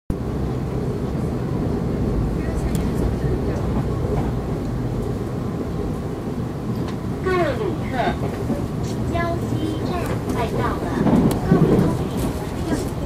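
Steady low rumble of a TEMU1000 tilting electric train running, heard from inside the passenger car. About seven seconds in, an onboard announcement in Mandarin begins that Jiaoxi Station is coming up.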